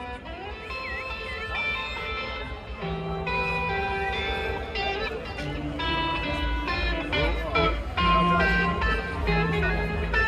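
Electric guitar intro played live through a big concert PA, heard from within the crowd. Low bass notes join about three seconds in, and the music grows louder.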